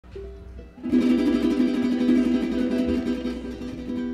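Cuatro and acoustic guitar of a parang string band strumming a chord together. A few soft notes are followed about a second in by loud, rapid strokes, and the chord then rings and fades toward the end.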